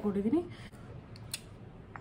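A few light, sharp plastic clicks as a small squeeze tube of CC cream is handled and opened, in an otherwise quiet pause.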